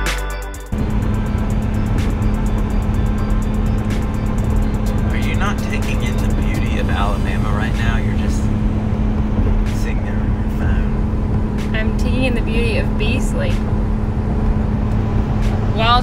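Steady road and engine noise inside a moving Ford Explorer's cabin while it tows a travel trailer: a low rumble with a constant hum. Music cuts off just under a second in.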